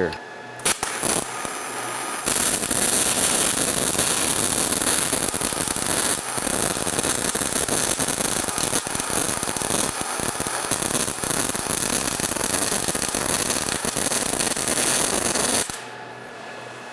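Spray-transfer MIG welding arc from an ESAB Rebel 235 running at about 290 amps and 26 volts on 95% argon/5% oxygen shielding gas: a steady, dense hiss with a slight crackle, which the welder takes for a sign that the arc length is just barely short. The arc strikes about half a second in, builds over the first two seconds, and stops just before the end.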